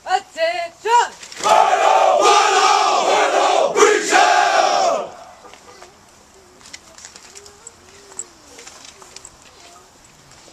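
A single voice barks short commands, then the whole formation of soldiers shouts in unison, loud, for about three and a half seconds before cutting off sharply, leaving low crowd murmur.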